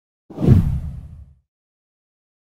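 A single whoosh sound effect with a deep low boom, starting about a third of a second in and fading away over about a second.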